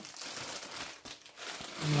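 Plastic freezer bag of frozen okra crinkling and crackling as it is handled, a quick run of small crackles.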